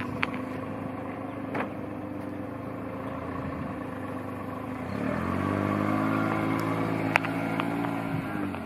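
A motor vehicle's engine hums steadily. About five seconds in it rises in pitch and gets louder as it accelerates, then eases off near the end. A few faint sharp clicks sound over it.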